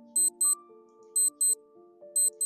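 A countdown-timer clock ticking sound effect, a tick-tock pair once a second, over soft background music of held notes.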